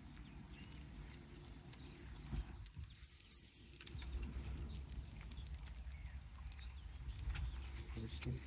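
Faint low rumble and light irregular taps of a fishing reel being wound slowly and steadily by hand, with faint bird chirps.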